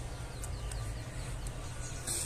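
Needle and kite thread being pushed and drawn through grosgrain ribbon in hand stitching: a faint rustle with a few soft ticks, over a low steady hum.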